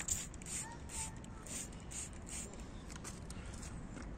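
Faint, short swishing strokes about twice a second, from a trigger spray bottle of cleaner being pumped onto a microfiber cloth and the cloth being worked over the car's door trim.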